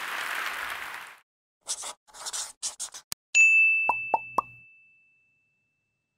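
Applause dying away in the first second, then a logo sound sting: a few quick scratchy sounds and a click, a bright ding that rings on and fades over about two seconds, and three short popping notes under it.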